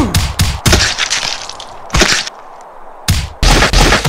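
Cartoon fight sound effects: a quick run of sharp cracks and whacks, another hit about two seconds in, then a louder, longer crashing burst near the end.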